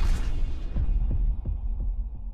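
Deep bass thumps, about three a second, over a low hum as the end music dies away; the high end drops out in the first half second and the bass fades toward the end.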